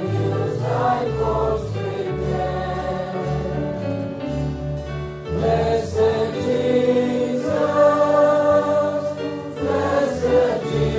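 Choral sacred music: a choir singing slow, sustained chords over a low bass line that changes about once a second.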